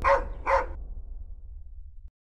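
A dog barks twice, the barks about half a second apart, over a low rumble that fades away.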